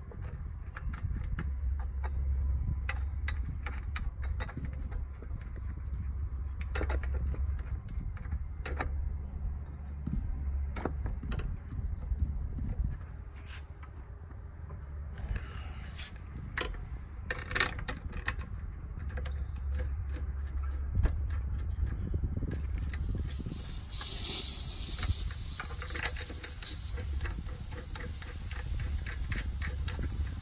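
Irregular metallic clicks and rattles of a wrench working the 13 mm bolts that hold a Vespa PX200 seat, over a steady low rumble. About three-quarters of the way through, a steady hiss with a thin high whine comes in.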